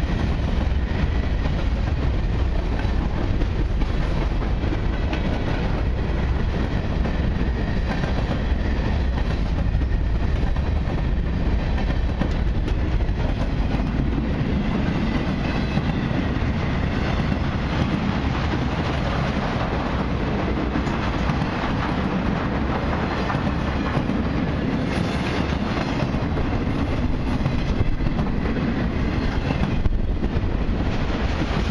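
A long freight train's cars rolling past, wheels clattering steadily on the rails. The deep rumble turns less deep about halfway through as the covered hoppers give way to flatcars and autoracks.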